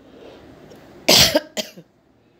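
A person coughing twice about a second in: one loud, short cough, then a smaller one just after.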